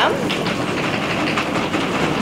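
Audience drumroll: many hands patting rapidly and steadily on tabletops.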